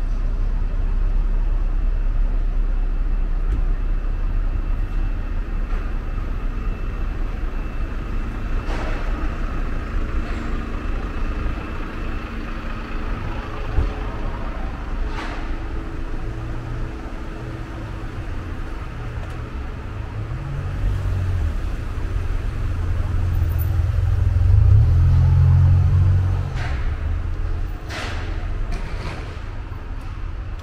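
City street traffic: a steady low rumble of car and bus engines passing, with one vehicle growing louder as it passes about two-thirds of the way in before falling away. A few short sharp clicks are scattered through it.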